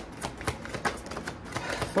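A deck of tarot cards being shuffled by hand: a rapid, irregular run of crisp card clicks and flicks.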